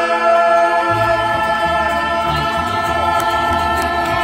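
Student mariachi ensemble performing: several voices sing long held notes together over strummed guitars. Low bass notes come in about a second in.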